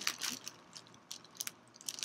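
Tissue paper crinkling as it is handled, in quick runs of sharp crackles with short pauses between them.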